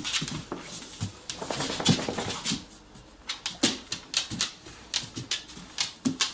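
An Alaskan Malamute's claws clicking and scuffing irregularly on a hardwood floor as the dog moves about.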